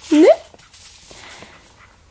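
A small puppy making faint sounds while it plays, after one short rising questioning "ne?" from a woman's voice near the start.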